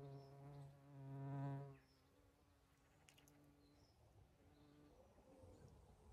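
A flying insect buzzing close by, growing louder and then breaking off about two seconds in, followed by a fainter, higher-pitched buzz that fades out a few seconds later.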